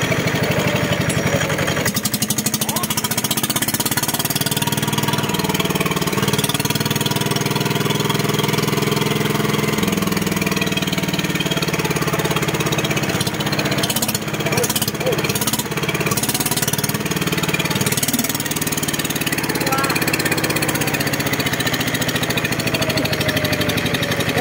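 Kubota ER65 single-cylinder horizontal diesel engine running steadily with a fast, even exhaust beat. A few sharp clicks come through about two-thirds of the way in.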